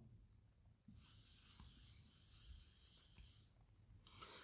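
Near silence, with a very faint dry rubbing hiss lasting a few seconds from about a second in: a whiteboard being wiped clean.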